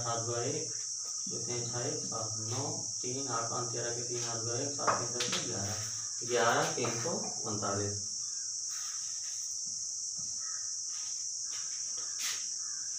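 A man's voice, low and half-spoken, working through the arithmetic for about the first eight seconds, over a steady high-pitched hiss that runs throughout. After that only the hiss remains, with faint scratches of a marker writing on a whiteboard.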